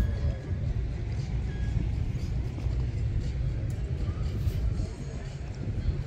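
Wind buffeting a phone's microphone: an uneven low rumble with a wash of noise over it.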